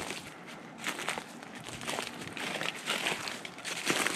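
Footsteps crunching through dry leaf litter, an irregular run of crackles and rustles.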